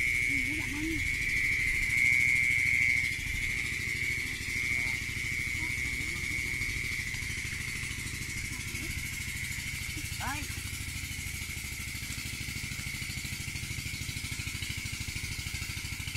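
Night chorus in a wet rice field: a steady high-pitched insect trill, strongest in the first few seconds and then fading, over a low, rapid pulsing chorus of frogs.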